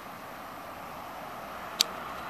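Steady outdoor background hiss, with one short sharp click near the end.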